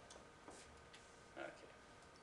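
Near silence: room tone with a few faint short clicks and a softly spoken "okay" near the end.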